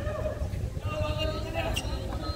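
A tennis ball struck with a racquet near the end, a single sharp knock over background voices chattering and a steady low rumble of wind on the microphone.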